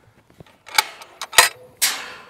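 Galvanized steel tube farm gate being unlatched by hand: three sharp metal clicks and clanks from the latch and chain in the second half, a faint ring from the gate, then a louder rattling clank near the end.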